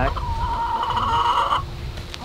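A backyard chicken giving one long, drawn-out call of about a second and a half that cuts off abruptly.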